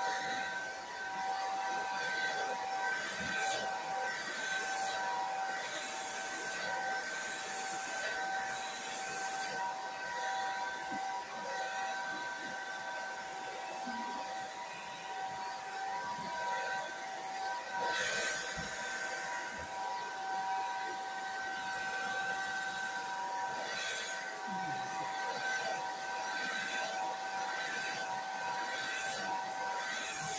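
Hand-held hair dryer running steadily: a fan-motor whine over rushing air hiss, swelling and dipping a little as it is moved around the hair.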